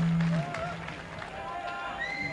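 Live indie rock band from an FM radio broadcast taped to cassette: a loud held guitar chord cuts off suddenly just after the start, leaving a quieter passage of thin sustained guitar notes and a wavering voice.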